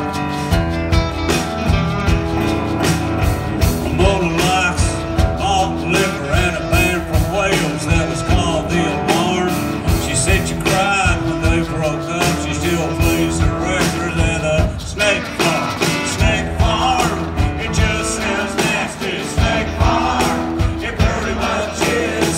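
Live band playing a blues-rock song: electric guitar and acoustic guitar over a steady drum-kit beat.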